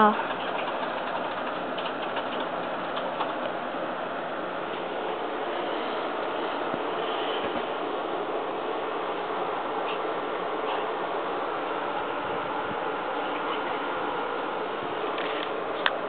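Steady background noise, an even hiss-like hum with no speech, with a few faint light clicks as small plastic toy parts are handled.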